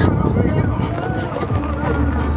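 A voice over the low rumble of a car on the move, with music playing around it.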